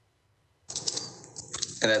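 Near silence, then faint clicking and rustling handling noise over an open video-call microphone, and a man's voice begins near the end.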